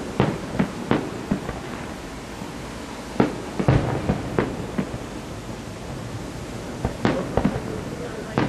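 Aerial firework shells bursting in an irregular series of sharp bangs: a quick run at the start, another cluster around the middle, and a few more near the end.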